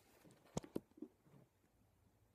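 Quiet handling noise: two short knocks a little after half a second in, then a fainter one, as the camera phone is moved and set down.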